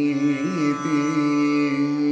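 Male Carnatic vocal in raga Gaulipantu over a steady tanpura drone: the voice sings a wordless, ornamented phrase that bends in pitch around half a second in, then settles on one held note.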